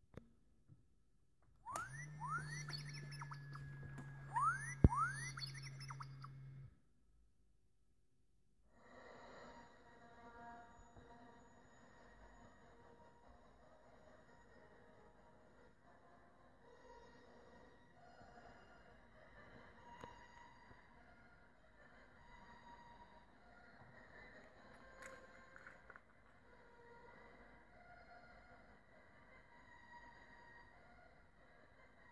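R2-D2 electronic beeps and whistles from the hacked R2-D2 toy's speaker: quick rising and falling chirps over a steady low hum, starting about two seconds in and cutting off about five seconds later, with a sharp click at its loudest. After that, only a faint, steady mix of tones.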